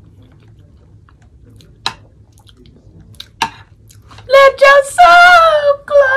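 A mouthful of food being chewed quietly, with two sharp clicks, then about four seconds in a woman's voice breaking into loud, drawn-out high-pitched sung notes.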